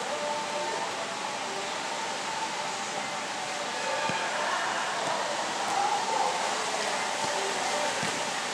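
Steady background hiss with faint, distant voices of players calling on a futsal pitch, and a soft knock of a football being kicked about four seconds in.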